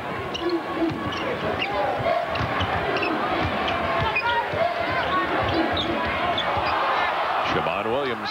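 Arena sound of live college basketball play: the ball being dribbled on the hardwood court, with sneakers squeaking and the crowd noise growing steadily louder.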